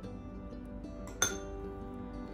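A metal spoon clinks once against a ceramic bowl a little over a second in, a short bright ring over steady background music.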